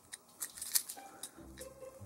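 Small plastic clicks and creaks from a Transformers Deluxe Prowl action figure as the motorcycle's front panels are worked into line and pressed together until they pop into place.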